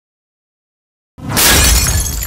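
Glass-shattering sound effect: silence, then a sudden loud crash of breaking glass a little over a second in, with a deep low thud under it, starting to die away.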